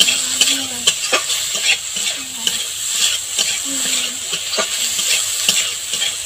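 Spatula stirring and scraping eggplant pieces and neem leaves as they fry in mustard oil in a metal kadai, working in the ginger-garlic paste. A steady sizzle runs under frequent, irregular scrapes and knocks against the pan.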